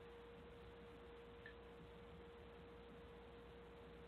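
Near silence, with a faint steady tone and a light hiss on the line.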